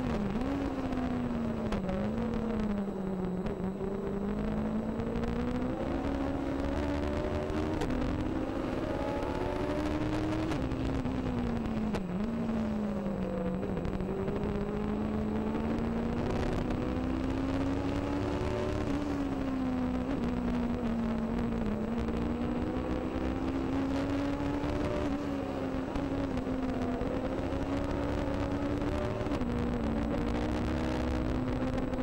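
Legend race car's Yamaha motorcycle engine heard from on board at racing speed. The engine note rises and falls continuously with the throttle, with sharp dips in pitch for lifts and gear changes into corners, the sharpest about twelve seconds in, and then climbs again down the straights.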